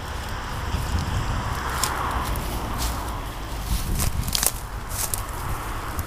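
Footsteps pushing through tall, dry brush and weeds, with stems rustling and brittle twigs crackling and snapping now and then, over a steady low rumble.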